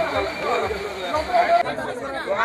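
Several people talking at once in casual chatter. Under the voices a low regular thump, about three a second, stops abruptly near the end.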